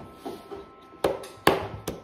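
A baby's hands slapping a plastic high-chair tray: a couple of light taps, then three sharp slaps about a second in, the middle one loudest.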